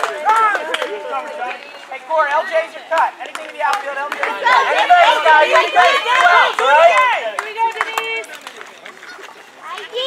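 Several people talking and calling out at once, overlapping voices that grow busiest in the middle and thin out near the end.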